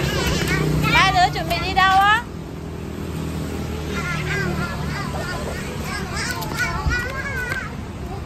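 Young children squealing and laughing as they play, loudest and highest about one to two seconds in, then lighter giggles and calls. A steady low hum of street traffic with passing motorbikes runs underneath.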